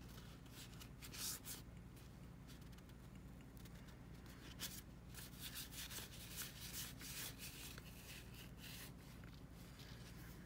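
A stack of Topps baseball cards being thumbed through by hand, the card edges sliding and flicking against one another in faint, quick swishes. A few come about a second in, then a denser run from about the middle to near the end.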